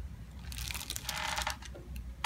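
Soft rustling of hands moving against hair and the paper cover of the table's headrest, lasting about a second from half a second in, with more starting near the end.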